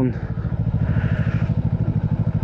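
Yamaha R3's parallel-twin engine idling at a standstill, a steady, even pulse.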